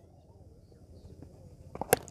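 Quiet outdoor background, then near the end a single sharp crack of a cricket bat striking the ball.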